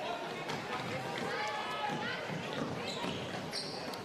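Basketball being dribbled on a hardwood court, a scatter of bounces under the low murmur of players' and courtside voices in a large hall.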